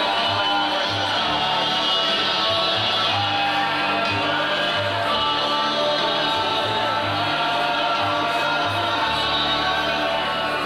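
Live band playing a song with singing, over a bass line that moves from note to note.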